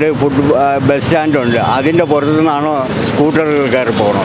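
A man talking in Malayalam, with the steady noise of road traffic behind his voice.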